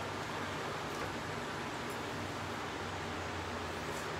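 Steady background noise: an even hiss with a low hum underneath, with no distinct events.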